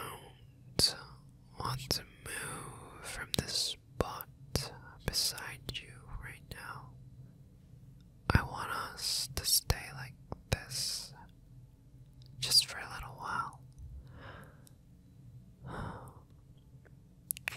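A man whispering close to the microphone in breathy, unvoiced phrases, with sharp short clicks between them.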